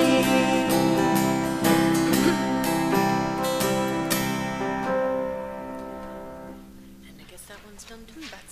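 Worship band ending a song: acoustic guitar strumming over a held chord, the last chord ringing on and fading out about seven seconds in.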